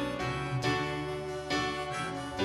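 Live worship band playing a song on electric guitar, bass and keyboard, with new chords struck strongly twice.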